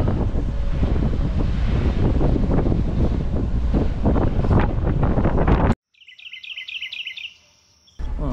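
Wind buffeting the microphone on the open deck of a moving ferry, a loud steady rush heaviest in the low end, which cuts off suddenly about six seconds in. A brief run of quick high chirps over a faint steady high tone follows.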